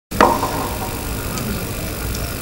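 Steady low rumble and hum of an outdoor public-address system's open microphone, with a short pitched sound at the very start that fades within about a second.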